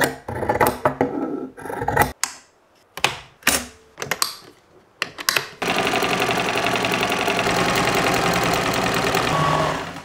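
Scissors cutting through linen cloth in a series of separate snips. About five and a half seconds in, an electric sewing machine starts and runs steadily with a rapid needle rhythm for about four seconds, then stops.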